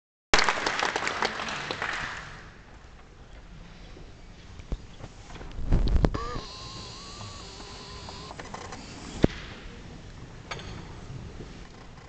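Audience applauding, dying away within the first couple of seconds. Then a quiet hall, with a low thud about halfway, a short held tone just after it, and a sharp click about three-quarters in.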